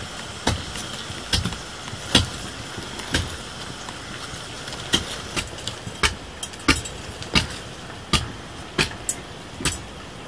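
Cooking over an open wood fire: a steady hiss with sharp, irregular cracks and knocks about every half second to second.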